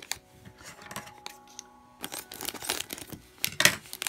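Clear plastic wrapper crinkling as a small vinyl figure is handled inside it. The crinkling comes in irregular bursts through the second half and is loudest just before the end.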